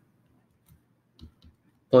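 Near silence broken by a few faint, short clicks, a pen tapping on a tablet screen while an equals sign is written.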